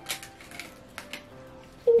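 A few short crackles and clicks from wrapping paper and tape being handled, a cluster near the start and a couple more around the middle, over faint background music.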